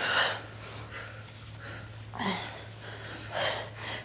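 A woman breathing hard from exertion during bicycle crunches: three short, audible breaths, one at the start and two more about two and three seconds in, over a faint steady low hum.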